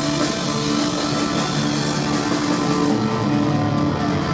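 Live rock band playing loud and steady, with electric guitar to the fore.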